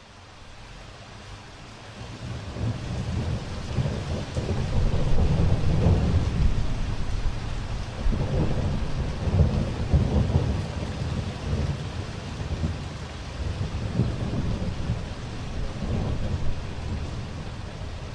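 Thunderstorm: steady rain with rolling thunder. It fades in over the first few seconds, and the low thunder rumbles swell several times.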